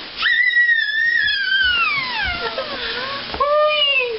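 A baby girl's long, high-pitched squeal that starts very high and slides slowly downward over about two and a half seconds, followed by a second, lower cry near the end.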